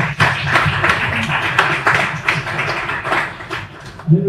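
An audience clapping in applause, many hands at once, dying away near the end.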